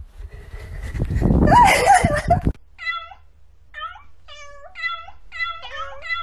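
A domestic cat's loud, wavering meow over a noisy background, then a run of short meows, about two a second, from cats begging for treats.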